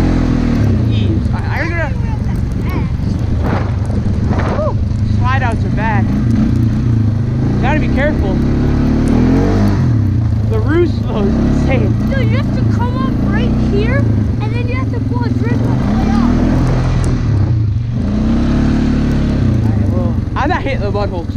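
Four-wheeler (ATV) engine revving under load on a hill climb, its pitch rising and falling repeatedly as the throttle is worked, with a brief let-off near the end.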